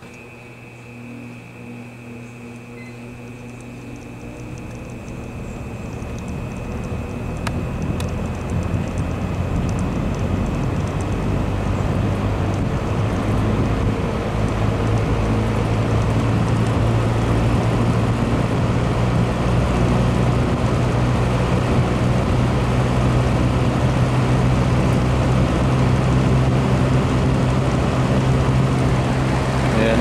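General Electric W-26 window box fan's shaded-pole motor starting up on medium speed: the blades spin up gradually, the rush of air and motor hum growing louder over about fifteen seconds, then running steadily. The fan starts on its own and settles at a normal medium speed.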